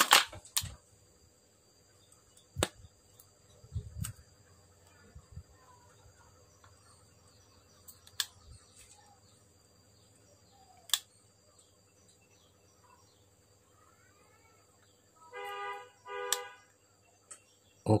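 Small clicks and taps from wires and a circuit board being handled and soldered, scattered through otherwise quiet room tone. Near the end come two short steady-pitched tones about a second apart.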